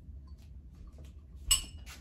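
Small brass bell clinking once about one and a half seconds in, with a short bright ring that fades quickly, as it is carried and set on a shelf.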